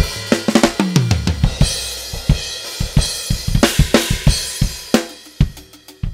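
Sampled drum kit finger-drummed on the pads of an Akai MPC Studio: quick kick, snare and hi-hat hits, with a bass tone sliding down in pitch about a second in and a cymbal wash that slowly fades toward the end.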